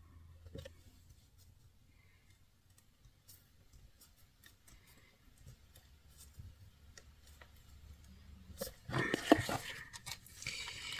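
Faint scattered ticks and rustles of a cardboard craft box being handled, with a louder stretch of handling noise near the end.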